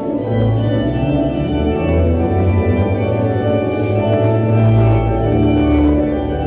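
Pipe organ playing a prelude in held chords over deep bass notes, the bass shifting twice.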